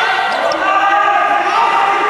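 Several people's voices shouting drawn-out calls over one another, echoing in a large hall.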